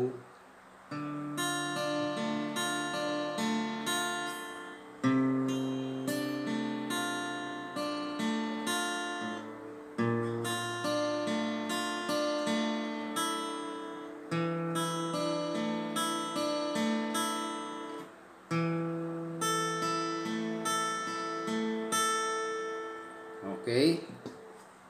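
Acoustic guitar fingerpicked slowly, each chord a bass note followed by single treble notes in a repeating 4-1-2-3-1-2-3-1 pattern. It moves through five chords, Dm, Dm/C, Bbmaj7, Asus4 and A5, each held about four seconds with a new bass note at each change.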